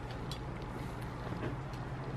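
Room tone: a steady low hum under a faint even hiss, with a few soft ticks.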